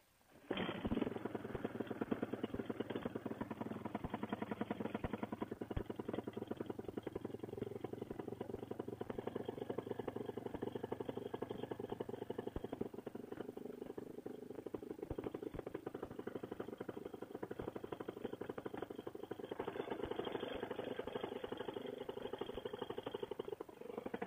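Paramotor trike engine (a Fresh Breeze Monster) starting about half a second in after the "clear prop" call, then idling steadily with a fast, even firing beat, a little louder near the end.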